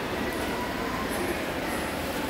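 Metal wire shopping trolley rolling along a hard shop floor, its wheels and basket giving a steady rattle.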